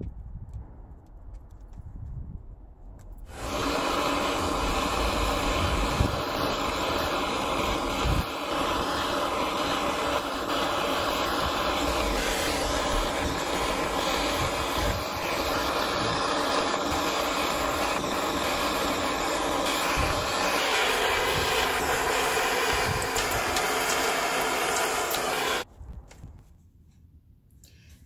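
Large handheld gas torch burning on full, a loud steady rushing roar of the flame as it heats scrap silver in a crucible to melting for casting. It comes on about three seconds in, after some low handling knocks, and cuts off suddenly just before the end.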